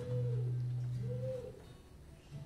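Quiet instrumental music from a live band: a sustained low note with two soft higher notes that swell and bend up and down in pitch.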